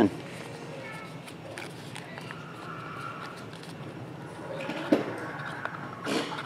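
Light scrapes and taps from a small cardboard card box being worked by hand to free a card caught inside, with one sharper tap about five seconds in. Under it run a steady low room hum and faint voices.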